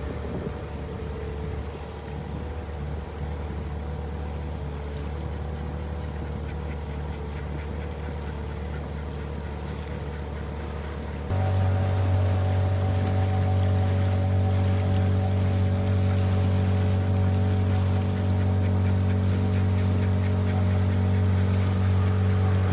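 Small outboard motor driving an inflatable boat, running at a steady note; about eleven seconds in the note steps up and gets louder, then holds steady again.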